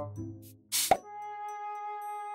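An editing sound effect: a quick pop with a falling pitch just under a second in, followed by a steady electronic chime-like note that holds on.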